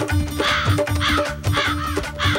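Crows cawing four times in quick succession over rhythmic background music with a steady bass beat.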